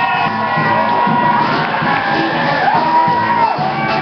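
A live band playing loud amplified music in a hall, with people in the crowd shouting and whooping over it.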